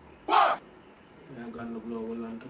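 One short shouted vocal ad-lib sample from a trap vocal-tag pack, previewed in FL Studio, sounding once about a third of a second in. A quiet voice follows from about halfway.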